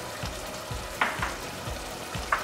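Diced vegetables and crushed tomatoes sizzling steadily in olive oil in a stainless steel stockpot, with a brief sharp tick about a second in.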